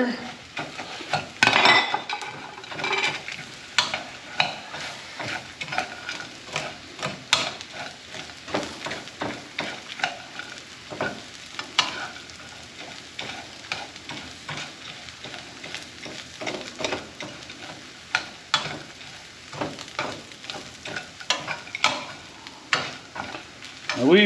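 Spatula stirring and scraping a dry mix of bacon, croutons and stuffing in a skillet: irregular scrapes and clicks several times a second, loudest about a second and a half in.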